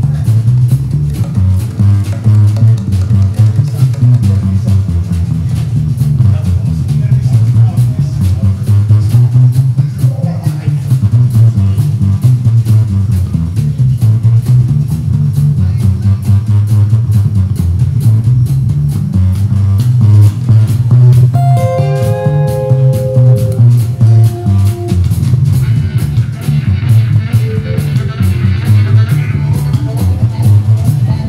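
Live acoustic blues band: upright bass and acoustic guitar playing a steady, driving rhythm with the bass line out front. Held harmonica notes come in about two-thirds of the way through.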